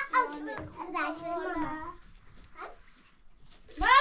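A young child's voice: drawn-out high vocal sounds over the first two seconds, then a loud call falling in pitch near the end.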